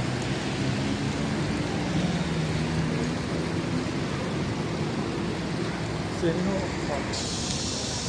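Busy city street ambience: a steady mix of passers-by's voices and traffic noise, with no voice standing out.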